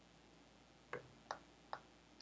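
Three faint computer mouse clicks in quick succession, starting about a second in, over near silence.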